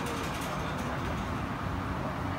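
Steady wind noise buffeting a phone's microphone, with a short rustle in the first second.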